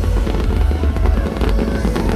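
Electronic dance music with heavy bass playing over a festival sound system, with fireworks crackling and popping over the stage.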